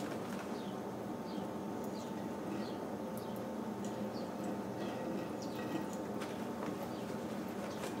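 Thin stream of tap water running steadily into a sink basin, with scattered faint short high chirps over it.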